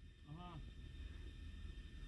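Quiet room tone with a steady low hum, broken about half a second in by a brief hummed "hmm" from a man's voice.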